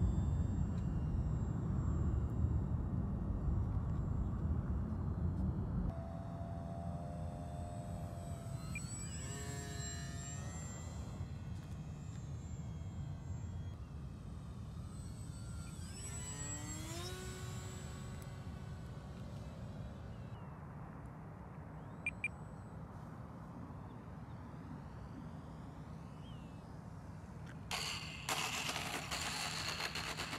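Electric brushless motor and 8x6 propeller of a 3D-printed RC plane flying by twice, its whine falling in pitch as it passes each time, with wind rumble on the microphone in the first few seconds. A rushing noise near the end as the plane touches down and rolls on the asphalt.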